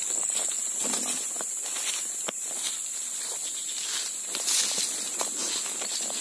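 Footsteps on dry leaf litter and brushing through undergrowth, irregular soft crunches and rustles, over a steady high-pitched drone of insects.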